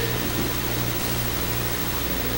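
Room tone in a pause of speech: a steady low hum with an even background hiss, with no distinct events.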